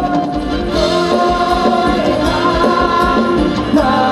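Live Thai ramwong band music: long held melody notes over a steady drum beat.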